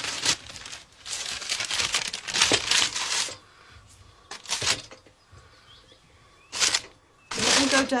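Brown paper bag crinkling and rustling in several short bursts as it is handled, filled with tomatoes and set on a scale pan.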